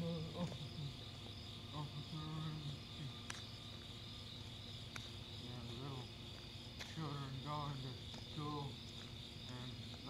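Crickets chirring in a steady high trill, with a person talking faintly in short stretches, once about two seconds in and again in the second half.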